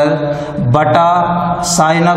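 A man's voice in long, drawn-out, sing-song syllables, close to chanting.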